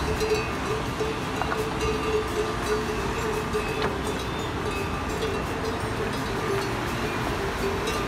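Mountain stream rushing over boulders, a steady noise, with a faint sustained tone running through it.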